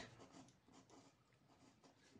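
Faint scratching of a pen writing on paper, in several short strokes.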